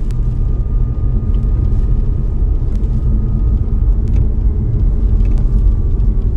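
Loud, steady low rumble with a faint thin high whine over it that stops near the end.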